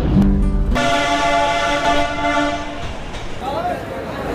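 Diesel locomotive horn of the Darjeeling toy train sounding as the train runs. It holds a single steady note for about two seconds, stepping up in pitch just under a second in.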